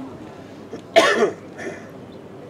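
A person's voice: one short, loud burst about a second in, then a fainter one just after.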